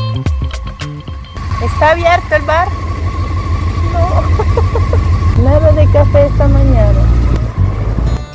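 Honda Hornet motorcycle engine running at low speed with a steady low drone, after background music cuts out about a second and a half in. A woman's voice exclaims several times over it, including a drawn-out "Nooo".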